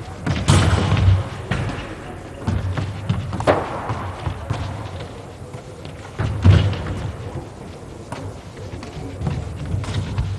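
Handballs thudding against the floor and goal during shooting practice, with several sharp hits about half a second, three and a half and six and a half seconds in, each ringing on in the echo of a large empty hall.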